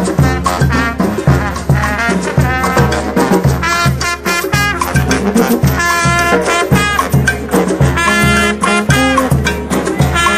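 Street brass band playing a lively tune live: sousaphone bass notes pumping on a steady beat under horns and saxophone.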